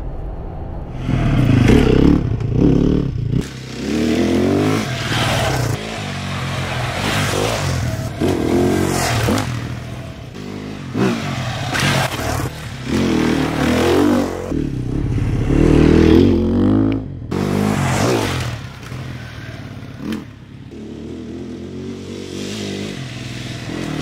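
300 cc enduro dirt bikes ridden along a rocky single-track, the engines revving up and down several times as the bikes come by, with clatter and scraping from tyres over rocks and dirt.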